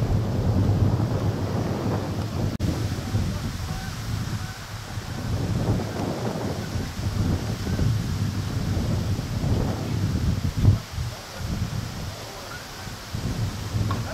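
Wind buffeting the camera microphone: a gusty low rumble that swells and falls in waves, with its strongest gust about ten and a half seconds in.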